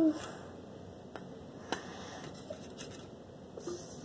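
A few faint clicks and taps over quiet room tone as a plastic glue bottle is held upside down and squeezed to get the last of the clear glue out.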